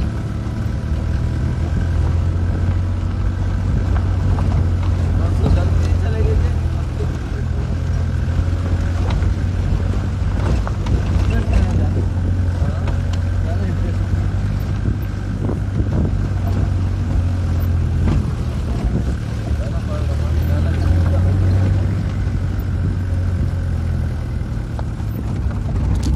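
A car's steady low engine and road drone heard from inside the cabin as it drives, with voices faintly underneath.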